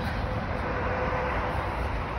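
Steady outdoor urban background noise: an even low rumble and hiss, with a faint steady hum through the middle.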